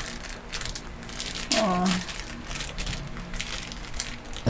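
Plastic snack-bread wrapper being torn open and crinkled by hand, a run of quick crackling rustles. A brief vocal sound comes about one and a half seconds in.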